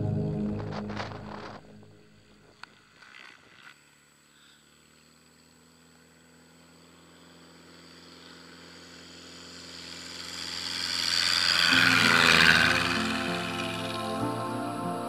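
Propeller engine of a single-engine high-wing light aircraft, fading as it moves away across a grass field, then growing steadily louder as it takes off and passes, loudest near the end. Music comes in shortly before the end.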